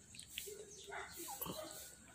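Miniature pinscher making a few short, soft whines while being spoon-fed.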